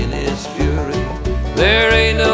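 Bluegrass band music with banjo picking over a steady bass pulse; a long held, wavering melodic note comes in about a second and a half in.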